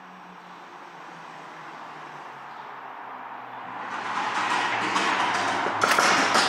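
A rushing noise with a low hum that slowly falls in pitch, growing louder over the last two seconds; right at the end, knocking on a door begins.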